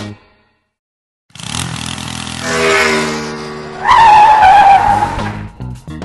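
Sound effect of a vehicle engine revving, starting about a second in after a brief silence and rising in pitch. It is followed by a loud tyre screech of about a second and a half, the loudest part.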